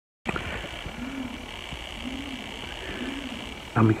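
Outdoor ambience with a steady hiss and three short, low, rising-and-falling calls about a second apart. A man starts speaking near the end.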